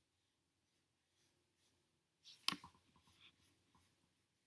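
Faint scattered clicks and light rustling of handling noise close to the microphone, with one sharper click about two and a half seconds in.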